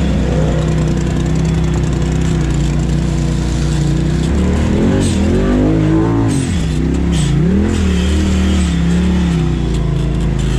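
Polaris RZR side-by-side's engine running steadily while driving on a trail. About halfway through the engine note rises and falls several times with the throttle, then settles again.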